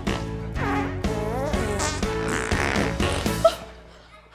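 Comic fart and burp noises traded back and forth over accompanying music: a string of short, wobbling blasts that bend in pitch, with a sharp loud one about three and a half seconds in, after which the music fades out.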